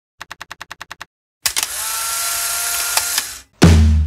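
A quick run of about nine clicks, then a hissing whir for about two seconds with a few clicks in it, then music with a deep bass begins near the end.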